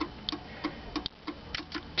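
Volkswagen Gol GTi turn-signal flasher relay clicking with a steady tick, about three ticks a second, as the indicator lights blink on and off.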